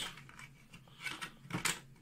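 Small metal latch on a wooden case being worked open by hand: a few light clicks and scrapes, the sharpest about one and a half seconds in.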